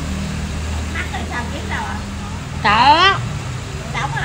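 A vehicle engine runs close by with a steady low hum. About two and a half seconds in, a person's voice calls out once, loud, its pitch rising then falling.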